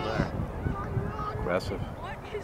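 Voices shouting across an open playing field, with one drawn-out call held for about a second in the middle.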